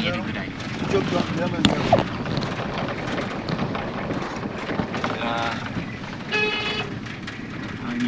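A vehicle driving over a rough gravel road, heard from inside the cabin: a steady rumble of engine and tyres, with a sharp knock about a second and a half in.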